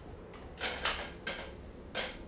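A few short creaking or rustling noises, the loudest just under a second in, over a faint low hum.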